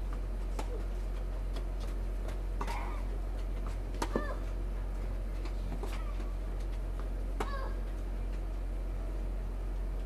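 Tennis ball struck back and forth in a children's rally: a sharp pock of the racket every one and a half to two seconds, five in all. Several strokes come with a short high-pitched cry from the child hitting. A steady low hum runs underneath.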